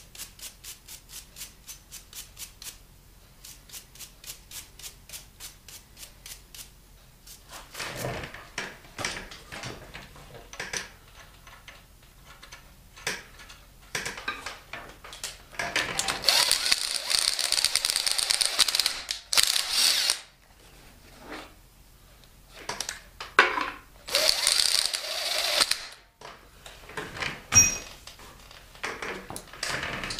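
Cordless impact driver turning a thread tap into a head-bolt hole in an aluminum LS engine block, hammering in two loud runs of a few seconds each: it is cutting the oversize threads for a steel insert. A steady run of clicks comes in the first few seconds, and a hand ratchet clicks near the end.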